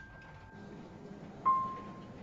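Sparse soundtrack music: a high held note fades away, then a single bell-like note is struck about one and a half seconds in and rings on.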